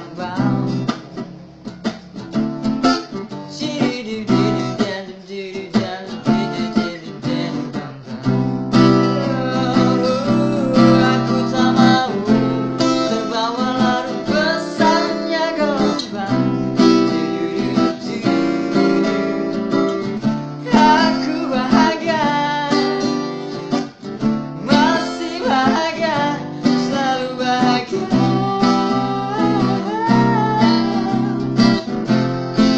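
Acoustic guitar strummed with a man singing along. The first several seconds are quieter, sparser guitar; from about eight seconds in the strumming fills out under the singing.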